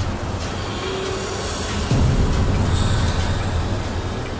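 Dramatic film background score and sound design: a dense, low rumbling texture with no speech, growing louder with a heavy low hit about two seconds in.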